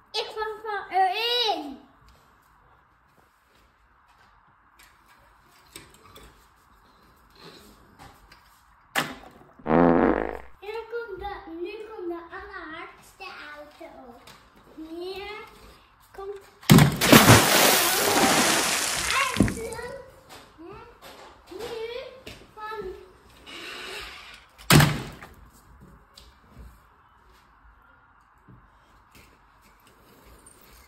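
A young child's voice babbling with no clear words, while toy cars are put into a clear plastic storage box and land with sharp knocks about nine seconds in and again near the end. About halfway through there is a loud noisy burst of roughly two and a half seconds.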